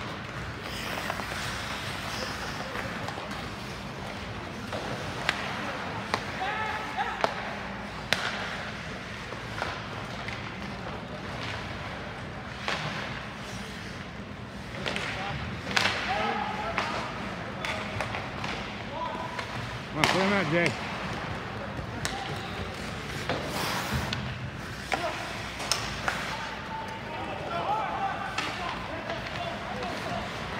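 Ice hockey play in a rink: sharp irregular clacks of sticks and puck striking the ice and boards over a steady background of arena noise, with scattered shouts from spectators and players.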